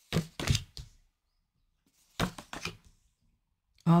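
Oracle cards being dealt from a deck and laid down on a flat surface: two short runs of sharp taps and clicks, one at the start and another just after two seconds in.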